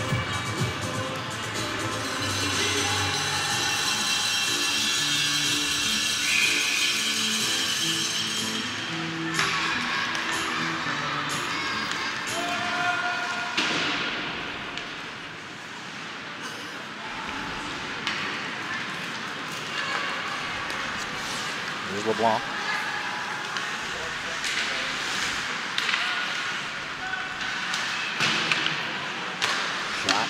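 Music over an ice rink's sound system during a stoppage, ending about nine seconds in. Then the sounds of ice hockey in play: sharp clacks of sticks and puck, skates on the ice, and voices in the arena.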